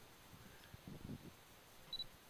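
Near silence, then one short high beep just before the end from a Canon DSLR camera being set up for a shot.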